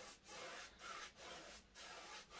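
Faint swishing of a fan brush dragged across a canvas, several short strokes blending wet white oil paint.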